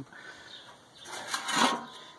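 A stainless steel divided mess tray scraping briefly across a painted metal surface as it is slid and lifted, about a second in.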